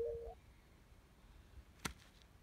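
Near silence, broken by a single sharp click near the end.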